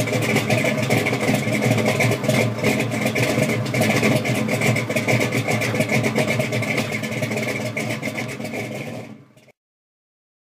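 An engine running steadily with a crackling edge, fading out about nine seconds in.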